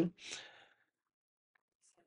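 A short, soft exhaled breath just after speech stops, then near silence.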